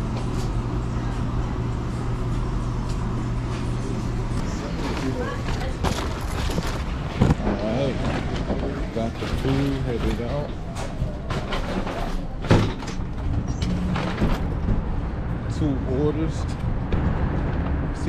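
Fast-food restaurant counter ambience: a steady low hum for the first few seconds, then people talking in the background, with a couple of sharp knocks.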